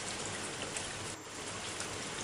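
Steady rain falling, an even hiss without rhythm or pitch.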